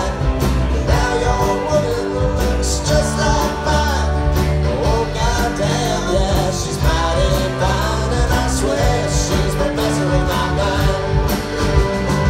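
Live band playing a country-rock song with electric bass, acoustic and electric guitars, keyboards and drums keeping a steady beat, heard through the room from among the audience.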